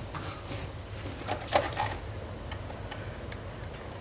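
A few soft, irregular clicks and knocks as a telephone handset is picked up and handled, over a low steady hum.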